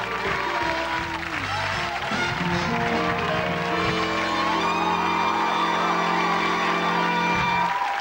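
Studio house band playing walk-on music, ending on long held chords that stop shortly before the end, with studio audience applause underneath.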